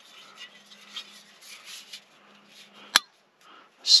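Jetboil's plastic fuel-canister stabilizer being handled and snapped onto a gas canister: light rustling, then one sharp click about three seconds in as it locks into place.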